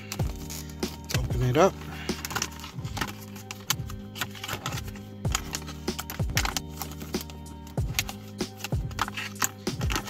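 Stiff clear plastic blister packaging being handled and pried at by hand, giving irregular crackles and clicks, over steady background music.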